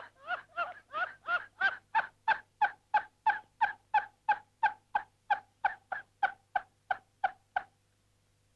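A man laughing in a long, even run of short "ha" bursts, about three a second, breaking off shortly before the end.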